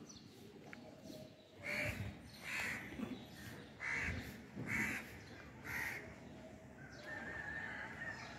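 A crow cawing five times, short calls between about two and six seconds in.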